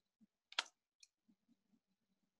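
Two short clicks over near silence: a louder one about half a second in, then a fainter, sharper tick about half a second later.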